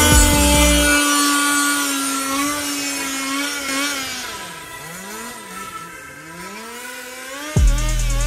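The whine of several electric RC cars' motors, gliding up and down in pitch as the cars accelerate and let off. Background music drops its bass beat about a second in and comes back with a hit near the end.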